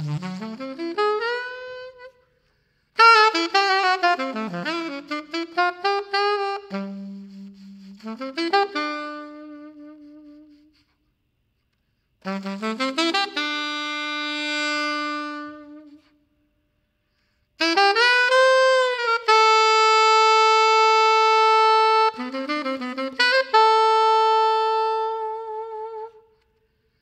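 Unaccompanied alto saxophone playing jazz phrases with short silent pauses between them: a line climbing up from a low note at the start, then quick runs, and long held notes near the end.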